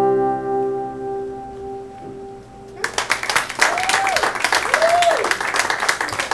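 A final strummed acoustic guitar chord rings out and fades. About three seconds in, audience applause breaks out suddenly, with cheering whoops.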